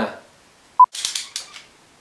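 A single short electronic beep at one steady pitch, a little under a second in, marking a cut in the edit. A laugh trails off at the very start, and brief breathy hissing follows the beep.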